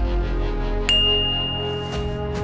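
Outro music, with a single bright ding about a second in that rings on as one steady high tone: a notification-bell sound effect.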